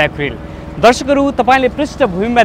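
A man speaking in Nepali, with a short pause near the start.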